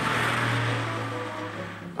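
Fire engine driving past, a sound effect: a steady low engine drone with a rush of road noise that swells and then fades, over background music.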